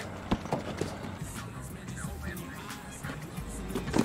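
A television drama's soundtrack playing at a low level: music under street sounds, with a few sharp knocks.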